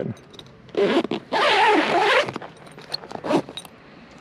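A zipper on the fabric cover of a roof-rack-mounted shower curtain being pulled open: a short rasp a little under a second in, then a longer, louder rasp, followed by a few light clicks and rattles of the fabric and fittings.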